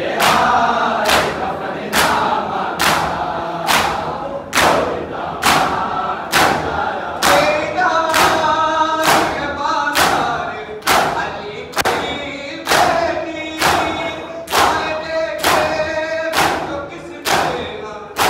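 A chorus of men chanting a Muharram nauha while a crowd beats their bare chests with open hands in unison (matam), a sharp slap about once a second under the singing.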